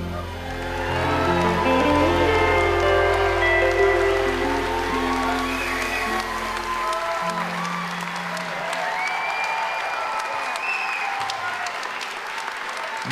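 A live band holds the closing chord of a slow song while the audience applauds. The low held notes stop about seven seconds in, and the applause carries on.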